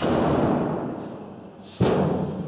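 Two heavy booming thuds: one at the start and a sharper, deeper one near the end, each dying away slowly over about a second.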